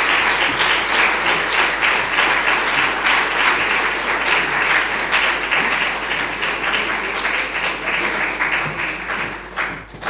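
Audience applause: many people clapping together in a dense, steady patter that thins out and fades near the end.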